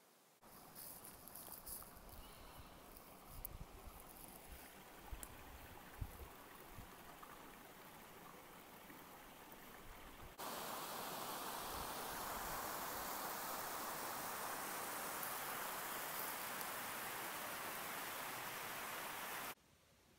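Faint outdoor ambience with light rustles, knocks and low wind rumble on the microphone; after a cut about halfway through, a louder steady rush of a running stream that stops suddenly near the end.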